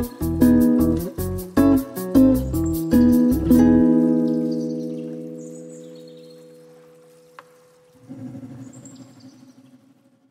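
Background music: guitar chords strummed to a steady beat, stopping about three and a half seconds in on a held chord that slowly fades. A softer low tone swells in near the end and fades out.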